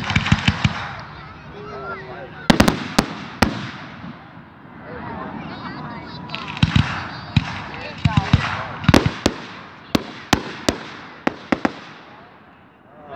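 Fireworks display: aerial shells going off in clusters of sharp bangs and cracks, several in quick succession, with short lulls between the volleys.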